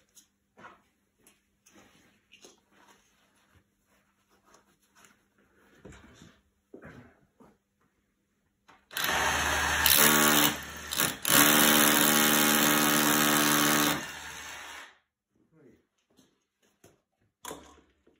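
Cordless rotary hammer drill drilling with a masonry bit through a timber batten into a concrete block wall. It starts about halfway through, stops briefly, then runs again for about three seconds before winding down. Light handling knocks come before it.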